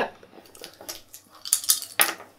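A handful of wooden Scrabble tiles shaken and tossed onto a felt-topped table, with light scattered clicks at first and a quick flurry of clattering clicks about a second and a half in as the tiles land.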